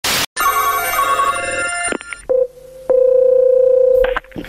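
Telephone line sounds as a call is placed: a short burst of noise, then a ringing with many tones for about a second and a half, then a brief beep and a single steady ringback tone held a little over a second.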